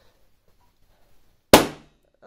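A large clear confetti balloon pricked and bursting with one loud pop about one and a half seconds in, dying away quickly.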